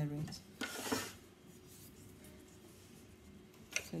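A short scraping rub, about half a second long, as the hard plastic chocolate mould is slid on the stainless-steel bench. Then quiet room tone with a faint steady hum, and a light click just before speech.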